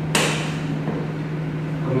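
A single sharp knock just after the start, fading quickly, over a steady low electrical hum.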